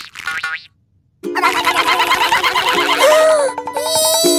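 Cartoon characters' imitation of a weird, scary night sound: a quick tapping clatter mixed with a buzzing, kazoo-like tone that bends up and down in pitch. It starts suddenly about a second in, after a short sound and a brief pause.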